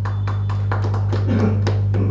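A quick, uneven series of light taps or clicks over a steady low electrical hum.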